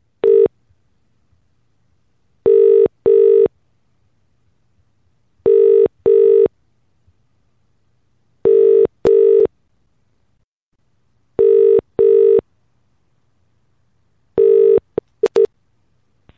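British telephone ringing tone heard down the line while an outgoing call waits to be answered: the double "brr-brr" ring repeating about every three seconds. The last ring is cut short near the end by a few clicks as an answering machine picks up the call.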